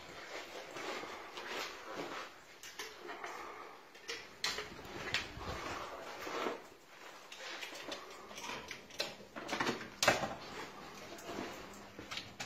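Scattered clicks, knocks and rustles of hands working at kitchen power points: appliance plugs being pulled from the wall sockets and cords and appliances shifted on the bench. A sharper knock about ten seconds in is the loudest.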